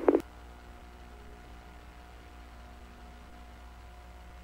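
The last syllable of a police radio transmission cuts off about a quarter second in. A faint, steady hiss and hum of the open radio audio line follows, with a thin steady tone running under it.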